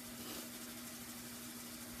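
A steady background hum holding one low tone, with a faint hiss over it.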